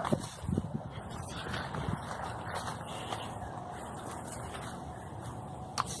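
Quiet footsteps and rustling through grass and undergrowth, a few soft footfalls in the first couple of seconds, over a steady low hiss.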